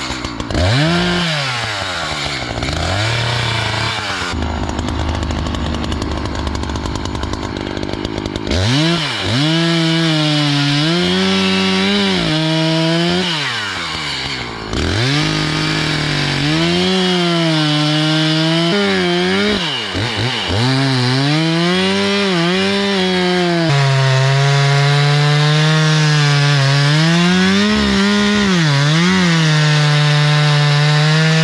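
Echo two-stroke chainsaw revved up and down a few times, then held at full throttle with short dips as it saws into the base of a large oak trunk to fell it.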